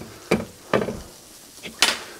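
A few short knocks and clinks as a cooking pot with a glass lid is gripped and handled through a kitchen towel, the sharpest near the end. Faint sizzle of meatballs frying gently in a pan underneath.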